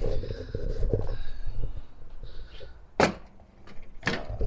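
The hinged lid of a black storage box on a rolling cart being lifted open, with rubbing and handling noise, then one sharp knock about three seconds in.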